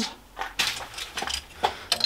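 A few light metallic clicks and knocks of a chuck key being handled and fitted into a milling machine's drill chuck, which is jammed tight on a 20 mm drill bit.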